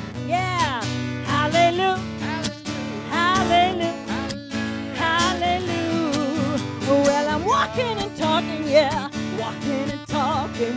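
A woman singing a gospel song into a microphone, with sliding, wavering held notes, over a strummed guitar.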